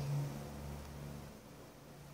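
Faint room tone: a low steady hum with light hiss that fades away over the first second and a half.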